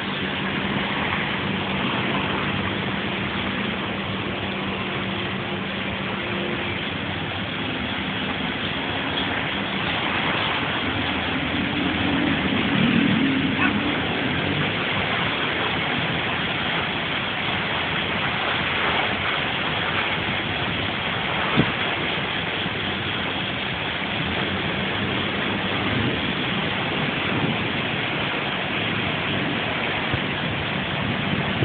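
Rain starting to fall on a concrete patio, a steady hiss of drops, with a faint low hum beneath it in the first few seconds and again around the middle.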